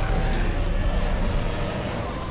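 Cinematic sound effect: a loud, low rumble with a rushing hiss over it, easing off slightly toward the end.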